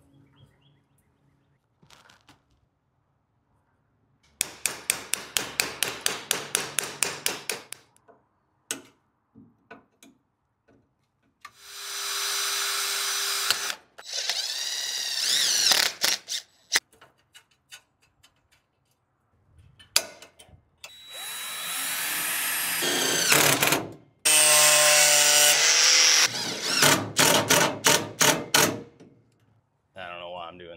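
Cordless DeWalt 20V impact driver with a drill bit boring through a small metal bracket clamped in a bench vise, in several separate bursts. Some bursts come as quick, even pulses of the trigger and others run steadily, with the pitch sweeping up and down as the bit cuts.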